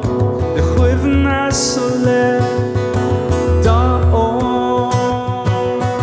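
Irish folk song performed live: acoustic guitar strummed, a bodhrán beaten with a tipper giving low thumps, and a man singing in Irish.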